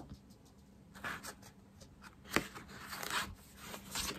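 Handling of a paper scrapbooking pad: faint rustling and scraping of the cardboard-backed pad against hands and a cloth-covered table as it is turned over, with one sharp tap a little over two seconds in.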